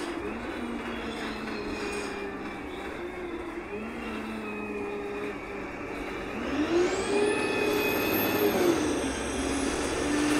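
Wright Pulsar 2 single-deck bus on a VDL SB200 chassis, heard from inside the rear of the saloon while it accelerates. The engine and transmission whine rises in pitch and steps down at each gear change. The loudest, highest whine climbs from about two-thirds of the way through and drops near the end.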